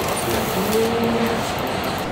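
Steady rushing background noise of a restaurant kitchen, like a ventilation fan, with a man's short spoken reply about a second in.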